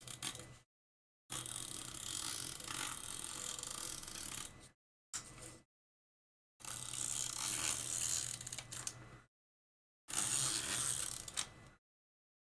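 A double-sided tape runner being rolled across paper, its gears and spool ratcheting in five strokes, two of them about three seconds long and the others shorter.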